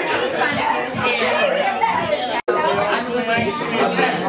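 Many people talking over one another in a crowded room: indistinct chatter, with a split-second gap about halfway through.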